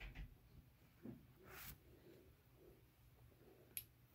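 Near silence, with faint handling sounds of a small pointed metal tool being worked into punched eyelet holes in cotton fabric: a soft scrape about one and a half seconds in and a sharp click just before the end.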